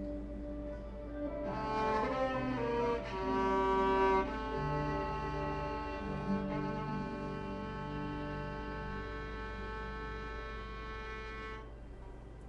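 Octo fiddle, a low-pitched bowed string instrument, playing the closing phrase of a slow melody: a few moving notes, then one long held note that stops shortly before the end.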